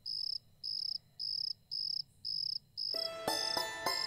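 Cricket chirping at night, short high chirps repeating evenly about twice a second. About three seconds in, music made of separate ringing notes comes in over it.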